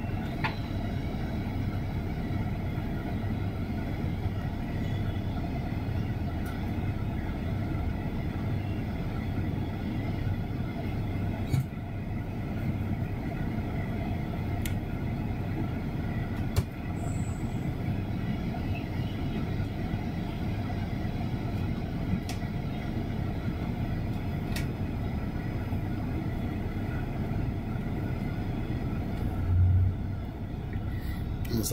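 Steady low drone of a bus's diesel engine and road noise heard from inside the passenger cabin while crawling in heavy traffic. A few sharp clicks or rattles come through now and then, and a louder low rumble swells just before the end.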